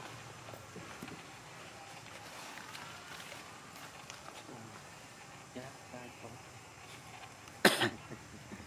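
Low outdoor background with faint scattered voices, then near the end one short, loud, cough-like burst.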